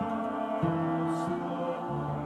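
A choir singing slow, sustained chords, the harmony shifting about half a second in and again near the end as the low voices move down a step.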